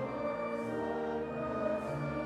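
A hymn sung by many voices together over accompaniment, moving slowly in long held notes.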